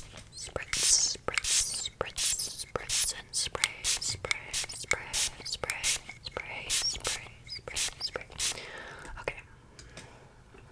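Plastic trigger spray bottle spritzing in short, sharp bursts, about two a second, with soft whispering between them. The spritzing stops about nine seconds in.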